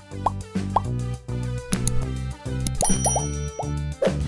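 Channel outro jingle: music over a stepping bass line, dotted with quick cartoon pop sound effects, a few near the start and a cluster about three seconds in.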